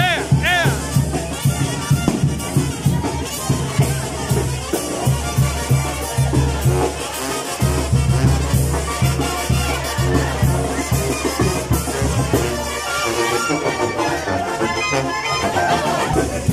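Live brass band music with trumpets over a steady, repeating bass beat, with crowd voices underneath.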